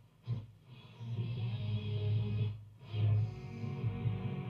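Music from a shortwave broadcast station coming through the Philips F6X95A valve radio's loudspeakers as the set is tuned in. It fades in about a second in, drops out briefly a little past halfway, then comes back.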